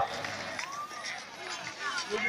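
Speech only: a man's voice finishing "hold on", then faint voices from the crowd around.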